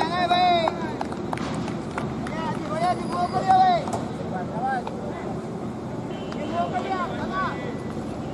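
Men's voices talking and calling over general crowd chatter at an outdoor cricket ground, with a few faint knocks.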